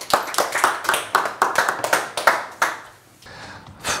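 A group of people clapping their hands in a small tiled room, with many quick, irregular overlapping claps that die away about three seconds in.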